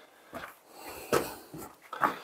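A man breathing hard, about five short, breathy breaths in a row: he is tired and out of breath from climbing.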